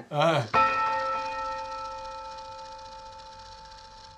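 A single bell-like chime struck about half a second in, ringing on with several steady overtones and slowly fading over the next three seconds.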